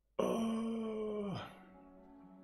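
A sudden loud, held low tone lasting a little over a second that slides down in pitch as it stops, followed by faint background music.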